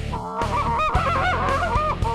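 Tim Grounds short-reed goose call blown in a fast run of about half a dozen short honking notes, each bending up and breaking in pitch.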